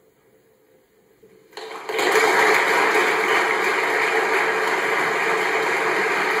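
A brief hush, then about one and a half seconds in an audience starts applauding, swelling within half a second into full, steady applause.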